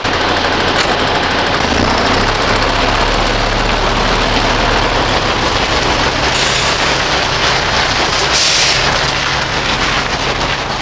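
Diesel engine of a fuel tanker truck running with a clattering rattle as the truck pulls away. The engine note steps lower about two seconds in, and two short hisses come through near the middle and toward the end.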